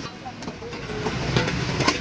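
Two metal spatulas working keema on a large flat metal griddle over a steady background sizzle and hum, with a few sharp metallic clinks in the second half.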